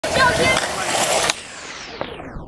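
Skateboard wheels rolling on concrete, with voices. The sound cuts off abruptly a little past a second in, leaving a quieter hiss that grows duller.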